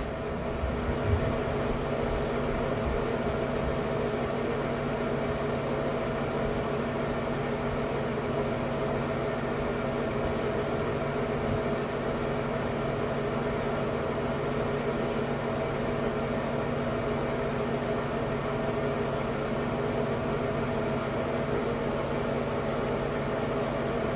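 Ceiling light-and-fan combo unit running: a steady motor hum with a constant whir of air.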